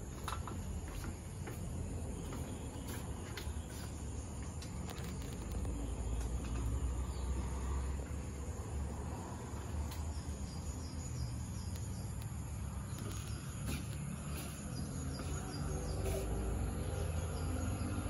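Outdoor ambience: insects chirring steadily at a high pitch, under a low rumble. In the second half, a couple of runs of short, repeated high chirps.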